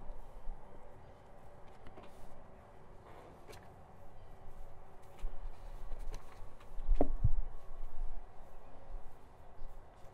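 Quiet outdoor ambience with a patchy low rumble and a few faint clicks. A short thump comes about seven seconds in and is the loudest sound.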